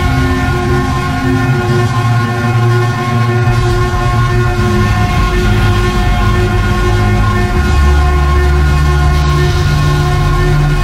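Experimental electronic drone music: several steady held synthesizer tones stacked over a loud bass. The bass drops deeper and grows heavier about three-quarters of the way through.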